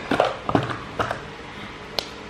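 Handling noise from a cloth drawstring bag being pulled over a hard object and closed: fabric rustling with a few light knocks in the first second, then quieter rustling.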